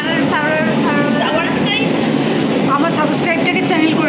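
Women talking close to the microphone over the steady running noise of a metro train carriage in motion.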